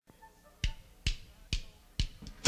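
Drumsticks clicked together four times, evenly, a little under half a second apart, counting in a fast punk rock song.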